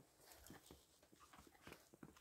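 Near silence in fresh snow, broken by faint, irregular soft crunches of footsteps in the snow.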